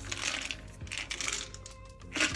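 Roasted peanuts rattling against each other inside a lidded clear plastic jar as it is handled, in two short bursts.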